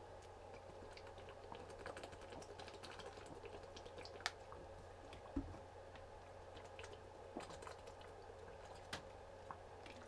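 A man drinking from a thin plastic water bottle: quiet, scattered clicks and crinkles of the bottle and soft gulps, over a low steady room hum.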